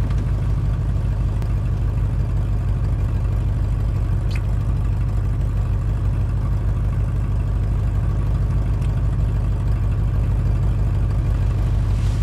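Steady low rumble of a car, heard from inside the cabin, with a faint click about four seconds in.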